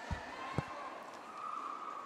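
Faint sports-hall ambience during a roller derby jam, with a sharp knock about half a second in and a faint steady tone in the second half.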